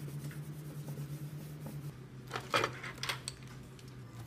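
Items being handled and set down on a wooden desk, with a plastic bag rustling: two bursts of clattering in the second half over a steady low hum.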